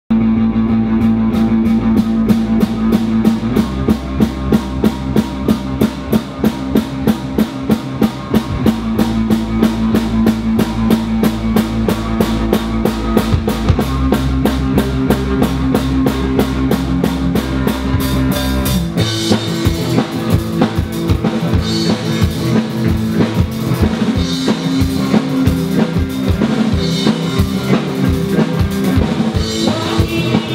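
Live rock band playing an instrumental passage on electric guitars, keyboard and drum kit, with a steady drum beat under sustained low chords. A little past halfway the low chords drop away and the cymbals come forward.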